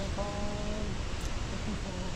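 A waterfall's steady rushing roar. A man's voice briefly holds a drawn-out sound over it near the start.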